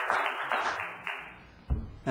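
Audience applause dying away, with a short thump near the end.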